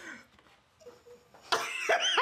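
Nearly quiet for the first second and a half, then a man bursts out in a sudden, cough-like stifled laugh.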